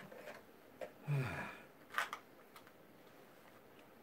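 Small clicks and taps of things being handled at close range. A short, falling murmur of voice comes about a second in and a sharper click at about two seconds.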